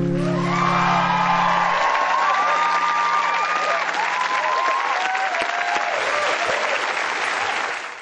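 Studio audience applauding and cheering with whoops, over the last ringing acoustic guitar chord, which dies away within the first few seconds. The applause fades out near the end.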